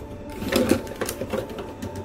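Plastic and metal joints and panels of a Weijiang SS38 Optimus Prime transforming figure clicking and ratcheting as its chest and arms are pushed into robot form. The clicks come in quick clusters, about half a second in and just past a second in, with one more near the end.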